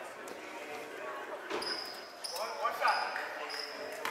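Gym sounds of a kids' basketball game: a basketball bouncing on the court, with children's voices shouting. A high squeak comes and goes through the middle seconds.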